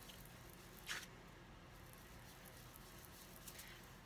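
Faint soft dabbing of a foam ink blending tool pounced on cardstock, with one slightly louder dab about a second in.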